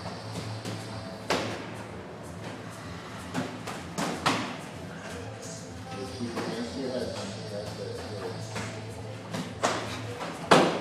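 Sharp slaps of gloved punches and shin-guarded kicks landing in Muay Thai sparring: a handful of scattered strikes, including a quick pair about four seconds in and another near the end, over gym background music and voices.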